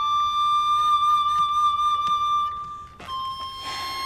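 Background music: a slow melody of long held notes on a flute-like wind instrument. The note fades briefly about three seconds in before a new one begins.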